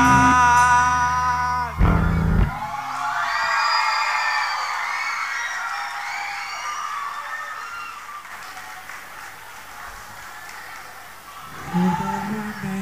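Live rock band on stage: a loud held full-band chord ends with a final hit about two seconds in. An electric guitar then rings on alone with wavering high notes that slowly fade, and a new low note comes in near the end.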